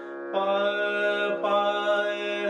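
Male voice singing long held notes of a Raag Bhairav bandish over a steady harmonium drone. The voice comes in after a brief pause at the start and moves to a new note about three-quarters of the way through.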